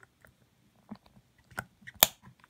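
Small screwdriver tip clicking and scraping against the plastic case of a remote as it is twisted in the battery-cover slot: a few faint scattered clicks, more of them toward the end, with a sharp louder click right at the end.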